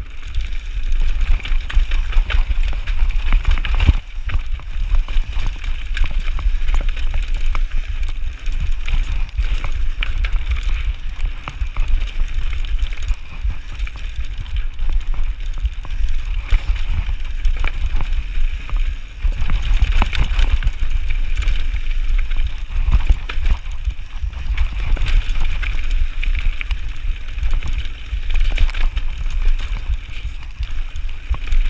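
Orange Five full-suspension mountain bike ridden fast down a loose, rocky slate trail: tyres crunching over stones, with frequent sharp rattles and knocks from the bike over the rough ground and a constant low rumble of wind on the chest-mounted camera's microphone.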